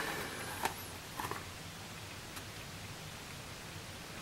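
A few faint soft clicks and handling sounds as the lid of a plastic wafer carrier is lifted off and a silicon wafer taken out, over low room tone.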